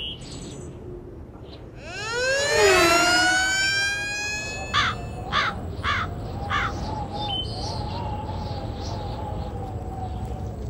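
A siren winds up in a loud rising glide about two seconds in, then a crow caws four times, about 0.6 s apart, while a wavering siren-like tone carries on underneath.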